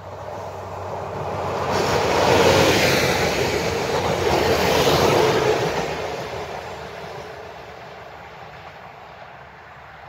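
A ZSSK class 861 diesel multiple unit passing close by on the track. The sound builds, is loudest from about two to five seconds in, then fades away as the unit moves off.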